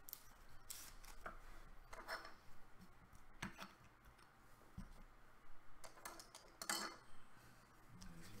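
Plastic card sleeve and rigid plastic card holder being handled: faint scattered clicks and short rustles.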